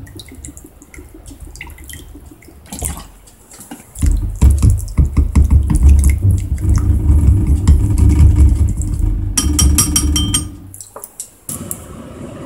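Metal fork stirring a thick miso seasoning sauce in a small ceramic bowl: after a quieter start with liquid poured from a bottle, rapid scraping and clicking for about six seconds from about four seconds in, with a brief ringing clink near the end.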